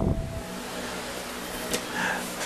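Steady whir of a small electric desk fan running, with a faint hum. A light click near the end.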